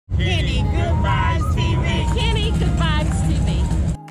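Channel intro sound: wavering, voice-like pitched sounds over a loud, dense low rumble, cutting off abruptly at the end.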